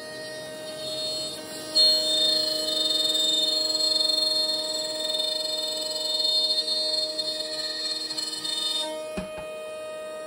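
An i2R CNC router's spindle running and cutting a wooden board: a steady whine made of several constant tones, which grows louder about two seconds in as the cutter works into the wood.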